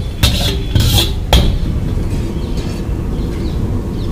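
Metal ladle knocking and scraping in a large metal wok: a few sharp strikes in the first second and a half, over a steady low rumble.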